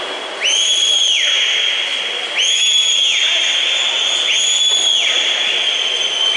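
A whistle blown in long blasts, one starting about every two seconds, each sliding quickly up into a high steady tone, over steady background noise.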